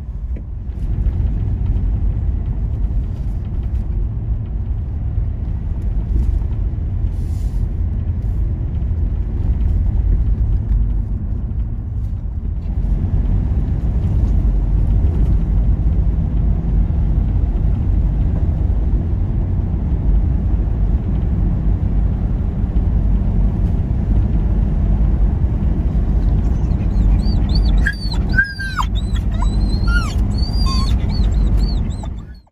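Steady low road and drivetrain rumble inside the cabin of a 2020 Toyota 4Runner driving along a country road. Near the end a dog whines a few times, in high cries that rise and fall.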